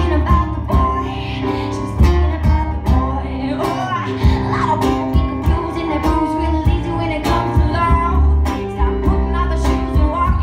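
A live rock-and-roll band playing an up-tempo song: guitar, bass and drums keep a steady beat under a female singer's voice.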